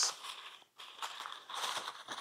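Faint crinkling and scraping of a cardboard box and its paper packaging being opened by hand, in small irregular bursts.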